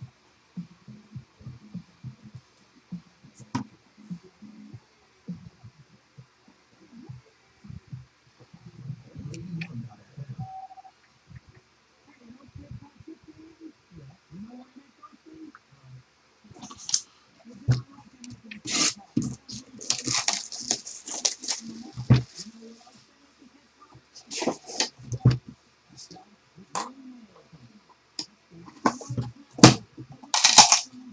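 Packaging being handled and unwrapped on a sealed trading-card box: quiet handling noises at first, then from about halfway through a series of sharp crackles in clusters.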